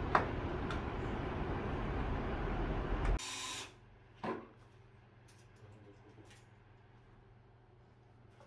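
Steady rushing noise that stops abruptly about three seconds in, at a cut. A short, bright hiss follows, then a quiet room with one or two light knocks.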